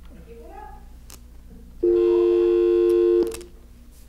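Telephone dial tone on the studio phone line: a loud, steady two-note hum lasting about a second and a half before it cuts off. No caller is on the line; the call has been lost.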